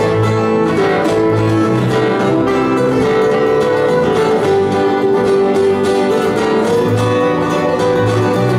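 Bluegrass band playing a fiddle tune on fiddle, five-string banjo, acoustic guitar, mandolin and bass guitar, with the bass notes on the beat underneath.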